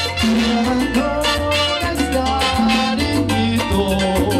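Live band playing upbeat Latin dance music, with trumpets, a steady bass line and percussion keeping a regular beat.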